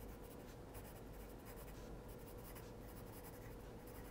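Faint scratching of handwriting on a sheet of paper, a quick run of short strokes as a word is written out.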